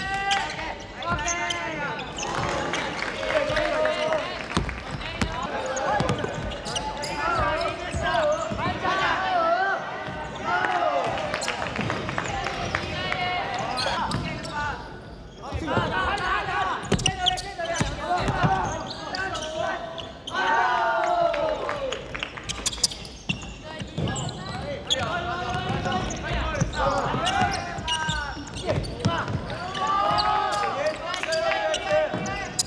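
Basketball game sounds on an indoor hardwood court: a ball bouncing on the floor amid voices calling out across the court, with several brief breaks where the sound jumps between moments of play.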